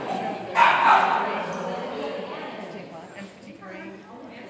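A dog barking, with one loud bark about half a second in and fainter yips after it.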